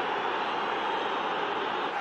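Large stadium crowd making a steady, even noise.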